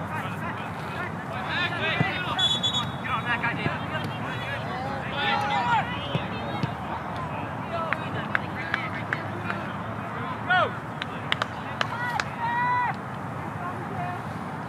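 Distant shouts and calls from players and sideline spectators across an open soccer field, over a steady crowd hubbub, with a few sharp knocks in between.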